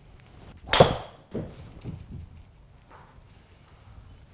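A driver striking a golf ball at full swing: one sharp, loud crack about a second in, a well-struck shot. A few quieter knocks follow within the next second or so.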